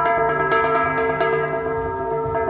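An ensemble of gangsa, flat bronze gongs, struck in a steady interlocking rhythm, their metallic tones ringing and overlapping.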